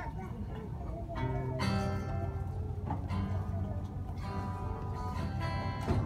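Guitar played live on stage, a few chords strummed and left to ring over a low room rumble.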